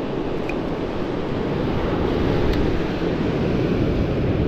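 Rough surf breaking on the beach, a steady low wash of noise with wind buffeting the microphone.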